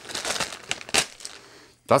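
Plastic packaging around a pair of USB cables crinkling as it is handled and opened, in a run of irregular crackles with one sharper crackle about a second in.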